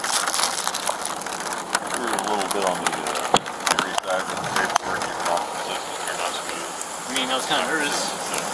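Steady hiss of rain on a police body camera, with a few sharp clicks and knocks from handling and muffled voices in between.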